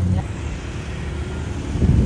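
Low rumble of a motor vehicle running on the street close by, growing louder near the end.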